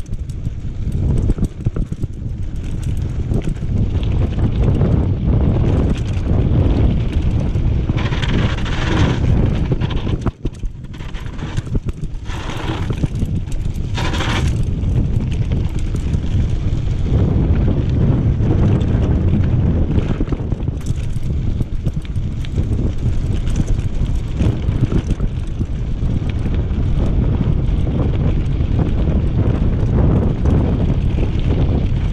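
Mountain bike running fast downhill on a rough gravel road: heavy wind rumble on the microphone with the clatter and knocking of the tyres and frame over the bumps, and a few louder hissing stretches in the middle. The tyres are over-inflated, so the bike hammers over the holes instead of absorbing them.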